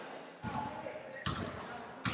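Basketballs bouncing on a gym's hardwood floor in the background: two thuds about a second apart.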